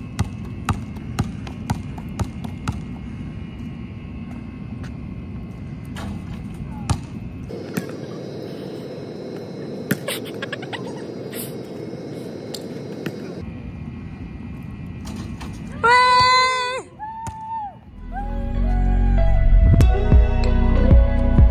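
A basketball bouncing on a hard outdoor court as it is dribbled, a couple of knocks a second, with a few sharper knocks around halfway as the ball is shot at the hoop. Near the end comes a short vocal exclamation, then soft music begins.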